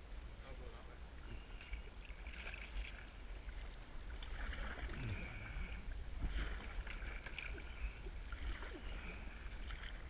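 Sea kayak paddle strokes: the blades dip and splash in choppy sea water about once a second, with a steady low wind rumble on the microphone.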